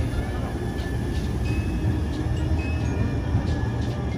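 Steady low rumble of a light rail train running along a city street, with general traffic noise.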